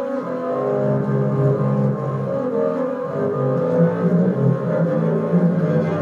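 Solo double bass, bowed, playing a running line of held low notes that overlap one another.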